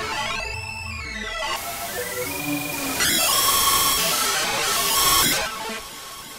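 Native Instruments FM8 software synthesizer playing its Analog Sequence preset while it is morphed across four loaded sounds with the XY morph pad, so the timbre keeps shifting. Sweeping pitch glides come in the first second or so, a brighter, denser texture from about three seconds in, and then the level drops shortly before the end.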